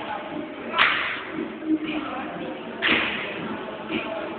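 Sharp, noisy hits at a steady beat, about one every two seconds, echoing in a large hall as a group of dancers works through an aerobics routine, with faint voices in between.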